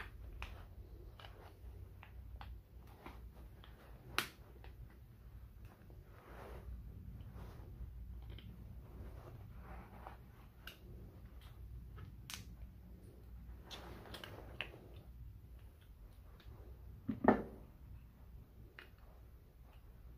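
Small scattered clicks and scrapes of pliers and cutters working a connector out of a stove control switch, with a sharper click about four seconds in and a louder clack near the end. A low steady hum runs underneath.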